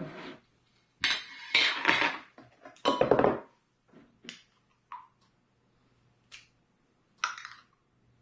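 A metal spoon scraping and clinking inside a glass jar of salsa as it is scooped out: two longer scrapes in the first half, then a few single clicks and a last short scrape near the end.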